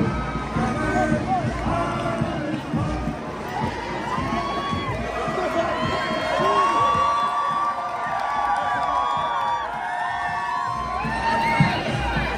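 Crowd of spectators cheering and shouting, many voices overlapping.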